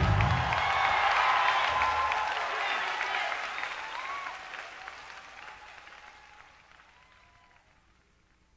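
Concert audience applauding and cheering, with a few shouts, right after a song ends; the applause fades out steadily and is gone shortly before the end.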